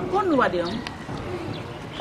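A woman's voice talking, with the speech concentrated in the first second and quieter after.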